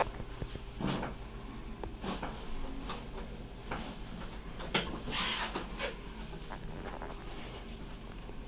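Quiet rustling of socks and clothing as hands grip and work a boy's ankle on a chiropractic table, with a few brief breathy swishes and one light click a little before the middle.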